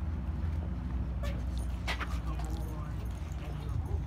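Steady low outdoor rumble, with a few sharp clicks about a second and two seconds in and faint voices in between.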